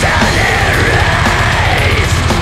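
Black metal: a long held, harsh screamed vocal over dense distorted guitars and fast, steady drumming.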